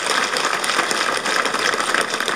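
An audience applauding: many hands clapping in a dense, steady patter.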